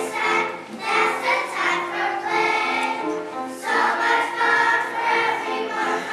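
Children's choir singing a song together, with held notes.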